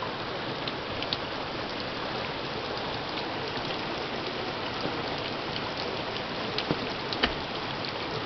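Heavy rain pouring steadily onto a backyard, a continuous hiss of falling water with a few sharper drop ticks near the end.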